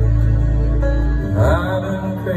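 Live folk song with symphony orchestra playing between sung lines: held tones over a deep sustained bass note, the bass dropping away about a second and a half in as a new phrase begins.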